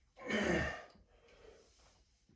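A man's hard, breathy exhale, one sigh lasting about half a second, from the effort of a barbell back squat; a much fainter breath follows.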